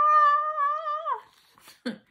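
A woman's voice singing a high, held "ah" as a mock scream, meant as the story's scream on a high C. The note stays steady for about a second, then drops away.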